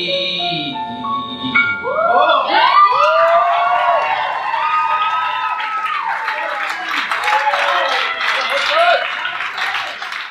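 The song's last held piano chord with a short rising run of notes, then a cabaret audience cheering, whooping and applauding. The applause fades out at the very end.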